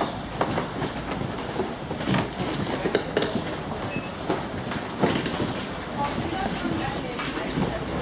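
Busy-room hubbub: indistinct background voices over a steady noise, with scattered knocks and clicks.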